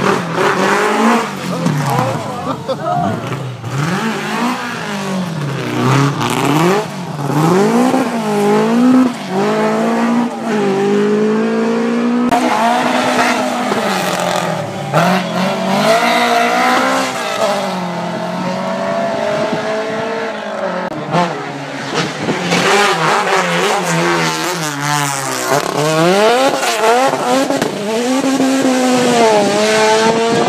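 Rally car engine revving hard, its pitch repeatedly climbing and then dropping with each gear change and lift off the throttle as the car comes up the road to the junction and powers through it.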